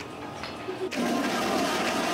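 Strawberry daiquiri mix poured from a bottle, the liquid running into a glass, getting louder about a second in.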